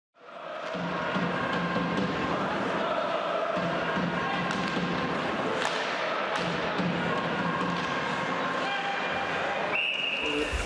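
Ice hockey arena sound: a tune of held notes over a crowd's din, with a few sharp clacks of sticks and puck.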